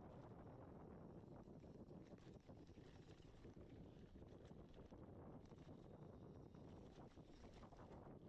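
Faint, steady rumble of a gravel bike's tyres rolling down a dirt trail, with wind on the microphone.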